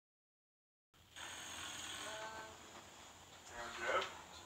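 Silence for about a second, then a man snoring in his sleep, with the loudest snore just before the end.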